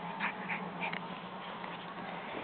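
A puppy making a few short, high-pitched vocal sounds in quick succession in the first second.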